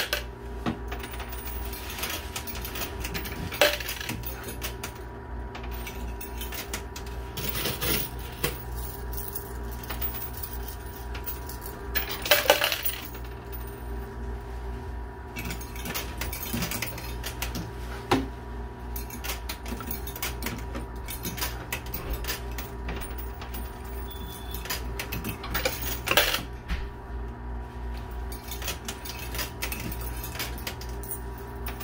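Quarters being fed into a coin pusher arcade machine, clinking and clattering onto the metal playfield and against other coins, in frequent clusters of clinks. The loudest cluster comes about twelve seconds in. A steady low hum runs underneath.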